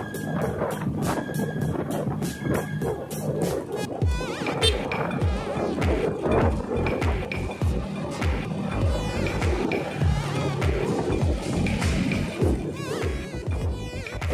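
Background music with a steady low drum beat.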